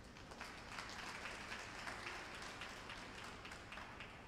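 Faint applause from a small rink audience: many scattered claps that build in the first half-second and die away near the end.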